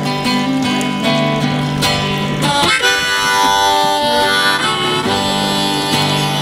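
Strummed acoustic guitar in a blues song's instrumental break, with a neck-rack harmonica coming in about halfway and holding long notes over the strumming.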